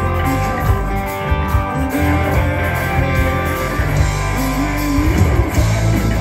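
Live rock band playing through a PA, heard from the crowd: guitars, bass and drums with a singer's melody over them.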